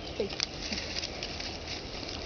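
Monkeys scampering and foraging over dry leaves, a patter of small clicks and rustles, with a short falling squeak about a quarter of a second in.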